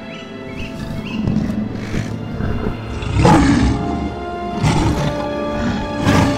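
A lion's roar, sound-designed for an animated lion: a loud roar about halfway through, then a shorter one near the end. A film score with sustained notes plays underneath.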